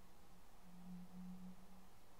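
Faint steady low hum over quiet room tone, swelling for about a second in the middle.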